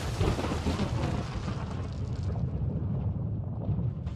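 A deep, continuous rumbling noise with a hiss on top, the hiss thinning out after about two seconds.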